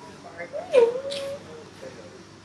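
An infant giving a short vocal call about a second in, its pitch dipping and then holding level for about half a second.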